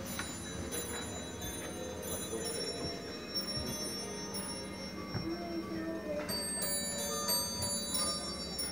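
Bell-like chimes and a tinkling tune from the clocks and musical ornaments of a clock shop, with faint ticking. The high ringing notes grow denser in the last couple of seconds.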